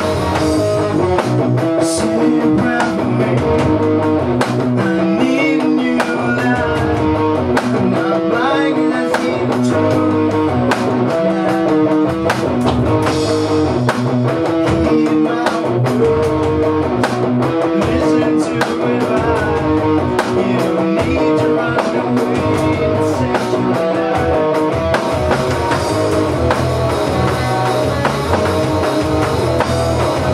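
A rock band playing: electric guitar, bass guitar and an electronic drum kit keep a steady beat. A harmonica, cupped against the vocal microphone, carries a wavering lead line over them.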